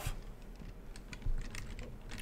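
Computer keyboard typing: a scatter of light key clicks, with one louder knock a little over a second in.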